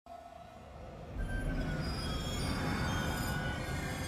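Dark film-title sound design: a low rumble that swells in about a second in, with several thin, high, metallic squealing tones held over it.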